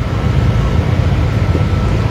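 Steady low rumbling background noise with no clear events in it.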